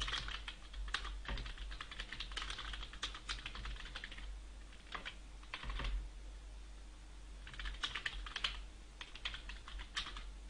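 Typing on a computer keyboard in bursts. A quick run of keystrokes lasts about four seconds, then there is a pause broken by a couple of single clicks, and more runs of typing follow near the end.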